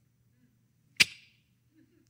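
A single sharp click about a second in, with a brief fading ring after it; otherwise near quiet.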